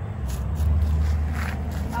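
A low, steady rumble for most of the two seconds, with a few light footsteps on garden ground over it.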